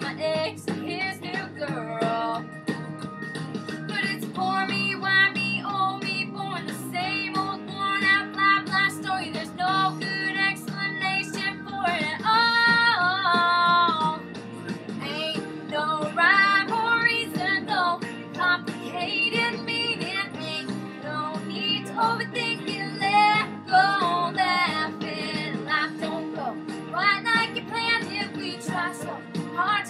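A woman singing a country-pop song with acoustic guitar accompaniment, holding one long note with vibrato about twelve seconds in.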